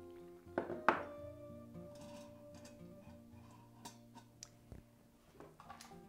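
Soft background music with steady held tones. About a second in, a small cup is set down on the countertop with a sharp thunk, and a few light knocks follow near the middle.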